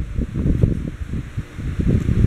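Camera handling noise: the microphone rubbing and brushing against clothing, a loud, uneven low rustling and crackling.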